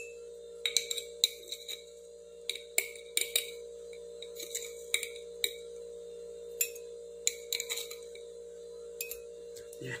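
Metal spoon scraping and tapping inside a glass jar as powder is scooped out: irregular sharp clinks with a brief glassy ring, a couple of dozen over the stretch.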